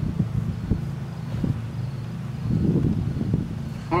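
Low, uneven outdoor rumble with a few faint knocks, swelling briefly near the end.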